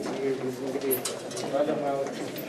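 Voices of several people talking as a group walks along an indoor corridor, with a few sharp clicks.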